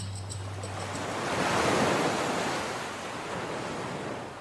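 Ocean surf: one swell of wave noise that builds for about two seconds and then ebbs, while the last notes of a song die away at the start.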